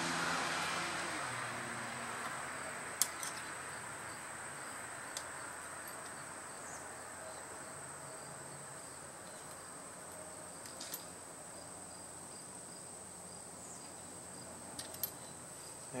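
Steady high-pitched insect chirring. A rushing noise fades away over the first few seconds, and a few light clicks of a hand tool on the bicycle crank stand out.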